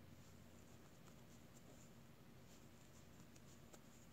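Near silence, with a few faint light clicks and scratches, mostly in the second half, from wooden knitting needles and yarn as stitches are purled.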